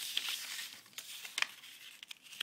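A square sheet of paper rustling as its corners are folded into the middle and the creases are pressed flat by hand, with two sharp crinkles.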